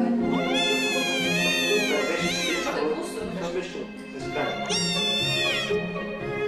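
Kitten meowing: a long, high, wavering mew of about two and a half seconds, then a second, shorter mew about four and a half seconds in, over soft background music.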